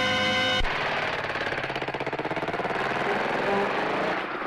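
A held music chord cuts off about half a second in, and a motor vehicle engine takes over, running with a rapid, even pulse. A short horn toot sounds near the end.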